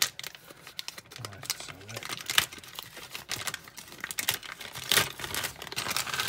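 Thin blue plastic bag being crinkled and pulled open by hand: a run of irregular crackles and rustles, with the sharpest crackles about two and a half seconds in and again near the end.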